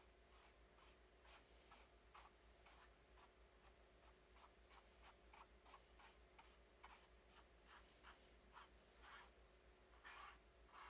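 Paintbrush strokes on canvas: faint, short, scratchy brushing, about two to three strokes a second.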